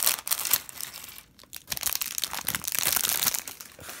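Thin clear plastic bag crinkling as it is handled and emptied of small plastic Lego pieces, in two spells with a short pause about a second and a half in.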